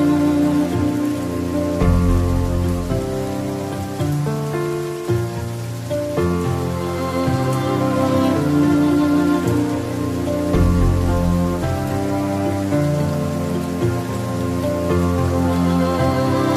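Steady rain mixed with slow instrumental music: held chords over a deep bass note, changing every few seconds.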